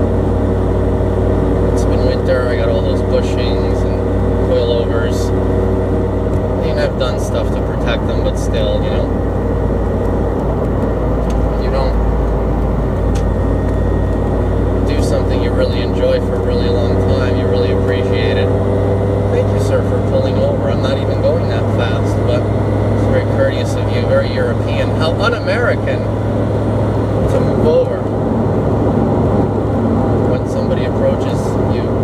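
Turbocharged Subaru WRX STI flat-four with a Milltek cat-back exhaust, heard from inside the cabin while cruising: a steady low exhaust drone and road noise, its pitch rising and falling slightly.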